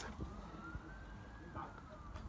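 A faint siren wail, one tone rising slowly in pitch for about a second and a half and then fading away.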